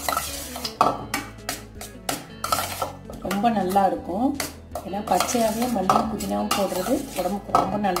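Metal spoon scraping and clinking against a stainless steel bowl in quick, irregular strokes as cooked rice is stirred and mixed. A voice in the background joins from about three seconds in.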